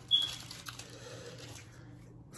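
A quiet pause with a steady low hum. A brief high squeak comes just after the start, followed by a few faint soft clicks and rustles of handling.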